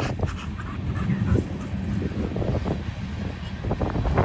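Low wind rumble and rubbing on a handheld phone microphone, with scattered soft rustles and clicks.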